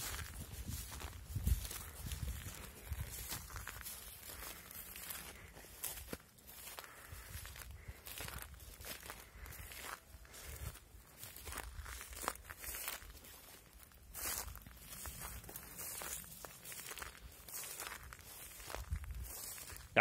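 Footsteps of a person walking uphill through dry grass and over rough ground, a continuous run of irregular steps with the grass brushing underfoot.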